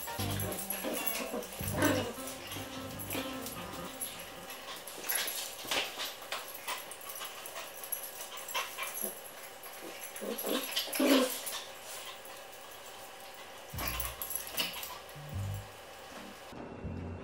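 Dogs playing, with a few short dog vocal sounds, the most prominent about eleven seconds in, over background music with a low bass line.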